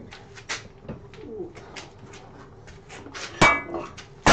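Clicks and light rattles of workshop tools and gear being handled at a wood lathe, ending in a sharp metallic clank with a brief ring about three and a half seconds in as the lathe's cast-metal tool rest is shifted.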